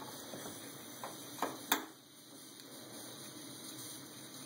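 MSR WhisperLite stove burner running steadily on 91% isopropyl alcohol through a K jet drilled out to about 0.8 mm, giving a low even hiss, with a blue flame. Two light knocks come about one and a half seconds in.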